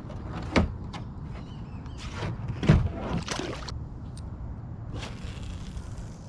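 Knocks and thumps on a plastic kayak as a caught pleco is handled: a sharp knock about half a second in and a heavier thump about two and three-quarter seconds in, with rustling in between and near the end, over a steady low rumble.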